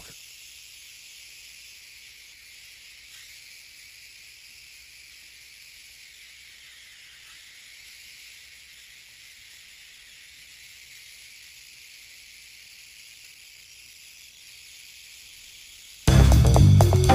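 Faint, steady hiss of steam jetting from the bent arms of a small aeolipile (Hero's steam engine) model as the sphere spins.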